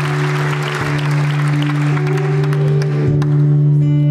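Acoustic guitar playing a song's opening notes while audience applause dies away about two to three seconds in.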